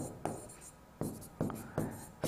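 A pen writing quickly on a board: a handful of short, faint scratching strokes.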